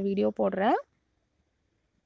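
A voice speaking briefly, cut off under a second in, then near silence.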